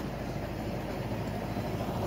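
Steady low rumbling outdoor background noise with no distinct events.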